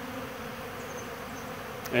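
Steady buzzing of a large mass of honey bees crowding open sugar-water feeders, hungry bees feeding heavily in a nectar dearth.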